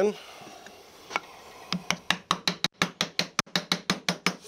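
A single light knock about a second in, then a quick run of light wooden knocks, about eight a second, from near the middle on. This is the dovetail tail board being tapped down onto the pin board to seat the joint for a test fit.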